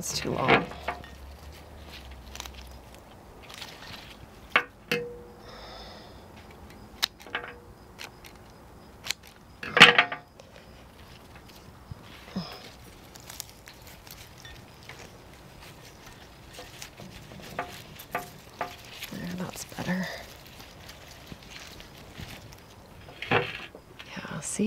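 Scattered clicks, taps and rustles of leafy stems being handled and poked into a glass vase standing on a glass table. The loudest click comes about ten seconds in.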